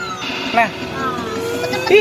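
People talking indistinctly over a steady background hum.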